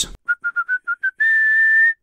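A person whistling a short tune: six quick notes creeping slightly upward, then one long held, higher note that stops abruptly.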